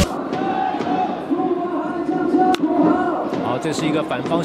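Ballpark crowd chanting and cheering, with a single sharp crack of bat on ball about two and a half seconds in as the batter lifts a fly ball.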